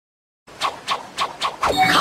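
Quick, even panting breaths, about four a second, starting after a brief silence, with a rising voice coming in near the end.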